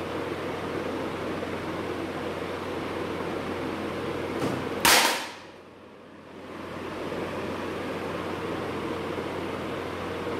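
An electric clothes iron falls off the ironing board and hits the hard floor with one loud clatter about five seconds in, just after a faint knock. A steady background hiss and hum runs underneath.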